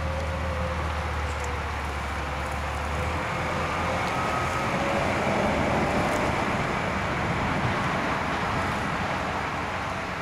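Steady low engine hum that cuts off about three seconds in, over a broad rumble of outdoor vehicle and traffic noise that swells a little in the middle.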